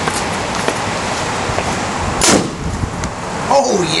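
Pneumatic quick-exhaust-valve potato gun firing a roughly six-ounce potato at about 70 psi: a single sharp blast a little over two seconds in.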